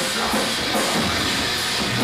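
Hardcore metal band playing loud: distorted guitars and drum kit in a dense, unbroken wall of sound.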